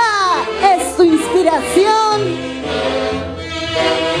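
Tunantada band music: a woman's voice sliding up and down in short wordless calls over the band, then about two and a half seconds in the saxophone section comes in with steady held notes.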